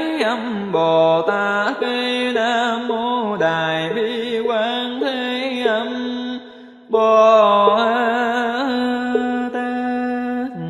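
Melodic Buddhist chanting with musical accompaniment: a voice holds long, slightly wavering notes. It breaks off briefly a little past the middle, then comes back in.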